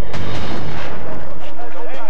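A loud booming drum hit from dramatic background music just after the start, followed by a dense jumble of noise and raised voices.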